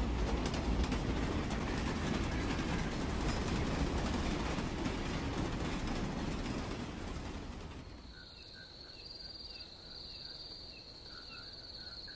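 Sound of a moving train, a steady running rattle that fades out about eight seconds in. It gives way to a steady high chirring of crickets with faint chirps.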